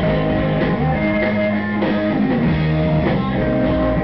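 Live rock band playing an instrumental passage: electric guitars with sustained notes over a drum kit.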